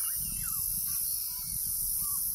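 Wetland outdoor ambience: a steady high insect buzz over a low rumble, with a few faint short bird chirps scattered through.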